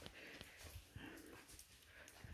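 Near silence: faint room tone with a few soft, indistinct sounds.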